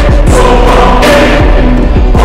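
Film background score: a choir singing sustained notes over deep, repeated drum hits.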